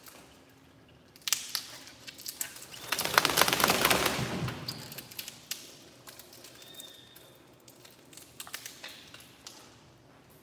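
A wet border collie shaking water off its coat, a burst of flapping and spattering of about a second and a half, with scattered smaller clicks and splashes before and after it.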